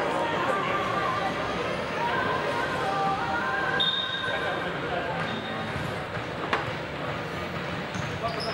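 Echoing sports-hall ambience during a pause in a futsal game: distant voices of players calling across the hall, with a brief high tone about four seconds in.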